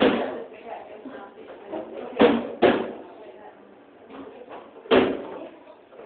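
Hand slapping the back of a choking-rescue training manikin: four sharp blows, one at the start, two in quick succession a little after two seconds in, and one about five seconds in.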